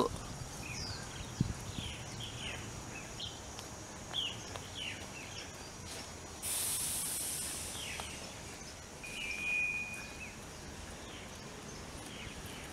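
Birds calling with short, falling chirps scattered throughout, over faint background hiss. A burst of high-pitched hiss starts suddenly about six and a half seconds in and fades by eight, and a single held whistled note sounds around nine seconds.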